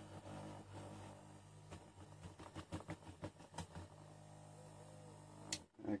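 Light taps and clicks as a flat board is pressed down onto a freshly poured plaster casting mould, over a faint steady low hum. The hum cuts off with a click near the end.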